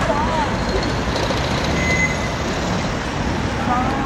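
Street traffic: vehicles passing on the road, a steady rumble of engines and tyres.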